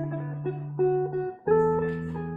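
Solo guitar played fingerstyle: single melody notes picked over a held bass note, then a new bass note and chord plucked about one and a half seconds in.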